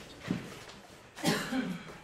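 A person coughs once, a short throaty cough about a second in.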